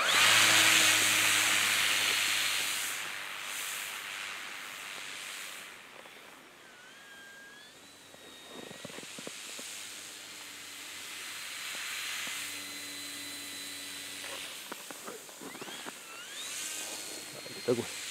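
Electric motor and propeller of an STM Turbo Beaver EPO RC plane running on throttle: a loud rushing hiss at first that fades over a few seconds, then a thin motor whine that glides up in pitch about seven seconds in and again near the end.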